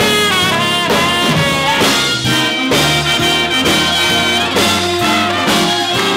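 Big band playing a swing ballad: a trombone solo over sustained saxophone and brass backing.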